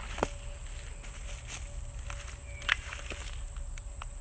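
Steady high-pitched drone of insects in summer woods, with a low rumble underneath. A couple of brief clicks are heard, a small one just after the start and a sharper one about two-thirds through.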